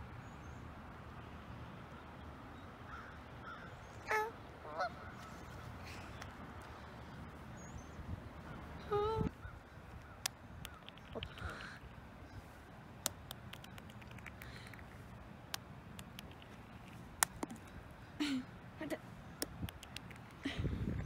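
Geese on a partly frozen pond honking now and then: a pair of short calls about four seconds in, another around nine seconds, and a few more later, over a faint low rumble. A few sharp ticks come in the second half.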